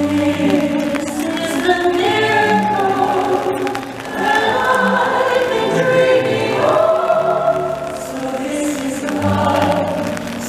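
Choir singing long, held, swelling notes with music: the soundtrack of a castle projection show, heard over an outdoor crowd.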